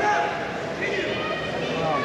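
Several people's voices, some raised and high-pitched, calling out over a steady background of crowd chatter in a sports hall.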